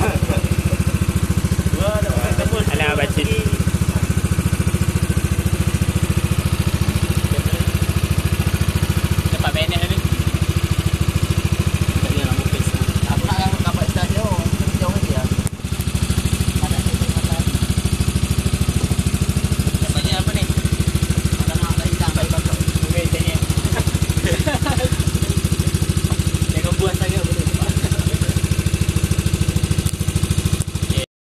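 The small motor of a bot penambang river ferry running steadily under way, a loud, even, low drone with a fine rapid pulse; it dips briefly about halfway through.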